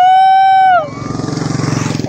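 A loud, long whooping cheer in a high voice, rising at its start and falling away at its end, lasting about the first second. After it the motorcycle engines are heard running steadily as the bikes ride up.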